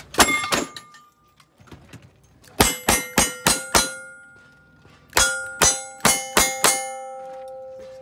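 Lever-action rifle fired rapidly at steel plate targets: a few shots near the start, then two quick strings of about five shots each, every hit clanging with a ringing tone that lingers after the last one.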